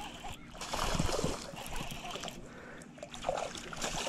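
A small hooked bass splashing and thrashing at the water's surface as it is reeled in close to the bank, in irregular bursts that are strongest in the first second and a half.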